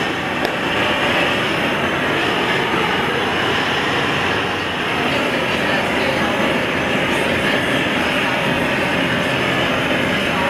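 Hand-held gas torches burning with a steady, loud rushing hiss, their flames played on a large piece of hot glass.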